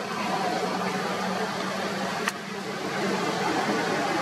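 Steady rushing background noise with a low, even hum, broken once by a single sharp click a little over two seconds in.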